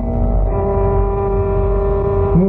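Carnatic classical music, a sloka sung in ragamalika: one long steady note held after a step up in pitch about half a second in.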